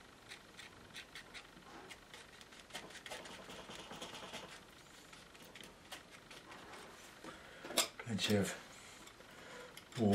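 Steel palette knife dabbing and scraping thick oil paint across a painting board: faint, quick scratchy strokes, one after another. Near the end comes a sharper click and a short murmur of voice, the loudest sounds in the stretch.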